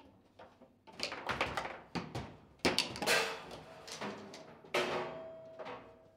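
Table football play: a rapid run of sharp knocks and clacks as the ball is struck by the plastic players and strikes the table walls, with the hardest hits about two and a half and five seconds in, in a rally that ends in a goal.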